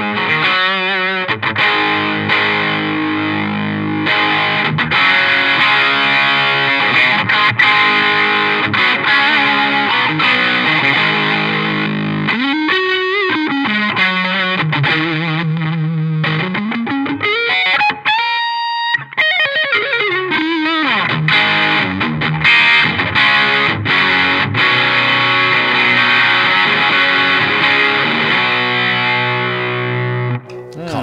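Overdriven Les Paul electric guitar played lead through a compressor, a clean booster and an Electro-Harmonix OD Glove overdrive: rock licks with long string bends, slides and vibrato through the middle, and a held high note about 18 seconds in.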